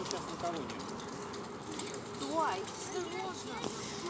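Faint, brief snatches of people's voices talking a little way off, over steady outdoor background noise.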